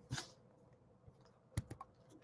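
A few quick, quiet computer keyboard clicks about one and a half seconds in, otherwise a quiet room.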